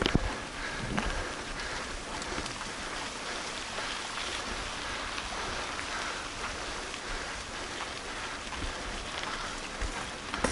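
Mountain bike tyres rolling over a loose gravel road: a steady gritty noise full of small clicks from stones, with a sharper knock just after the start and another about a second in.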